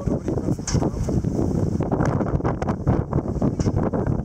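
Wind buffeting the microphone in a heavy, gusting low rumble on the open deck of a sailing ship, with a few short sharp knocks or rustles in the second half.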